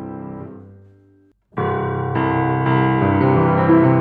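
Grand piano playing: the notes die away over the first second, there is a brief silent gap, then the piano comes in again louder about a second and a half in with a run of chords. It is recorded close through an Oktava MK-319 condenser microphone, the unmodified mic before the gap and the modified one after it.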